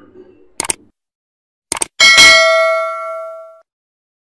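Subscribe-button animation sound effect: two quick pairs of clicks, then a single bright bell ding that rings out and fades over about a second and a half.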